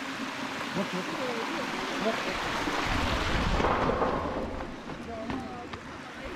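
Rushing water of a rocky mountain stream, a steady hiss that grows louder toward the middle and fades again.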